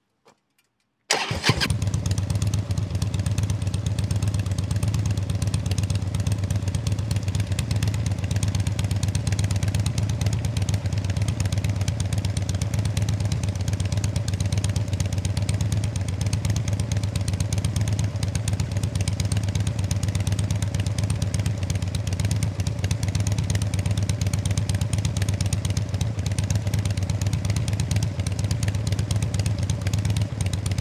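Harley-Davidson Dyna's V-twin engine starting suddenly about a second in and then idling steadily.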